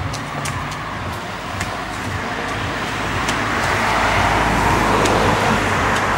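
Road traffic noise: a passing vehicle swelling louder through the second half, over a low rumble, with a few faint clicks.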